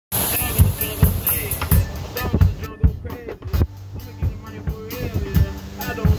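Live street-band music: a drum kit with a repeating kick-drum beat, played with keyboard and a singing voice.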